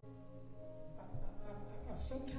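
Music: a sustained chord of steady held tones with a buzzing edge.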